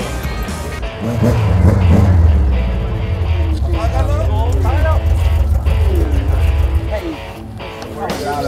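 Background music with people talking over it. A loud, low, steady rumble comes in about a second in and drops away about a second before the end.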